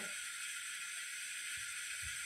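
Steady background hiss with a faint high whine, and two soft low thumps near the end.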